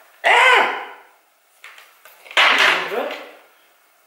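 A woman's voice: two short untranscribed utterances or exclamations, about a second apart, with a quiet pause between them.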